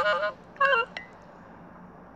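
A girl laughing: a run of high, wavering laughter that breaks off about a third of a second in, then one short giggle just after half a second.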